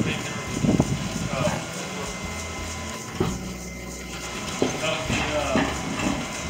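Feed mill machinery running with a low hum that comes and goes, with a few short knocks and voices in the background.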